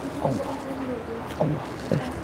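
Soft speech: a voice saying "om" twice, over a low background murmur in the room.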